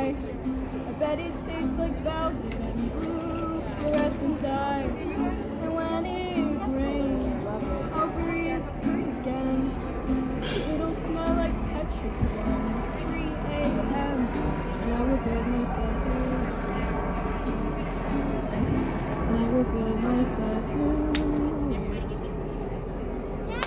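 Acoustic guitar playing the closing stretch of a song, with a voice singing wordlessly at times, ending near the close.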